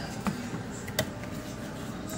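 Cardboard box and foam packing being handled as the packing is lifted out, with two light clicks, one just after the start and a sharper one about a second in, over faint rustling.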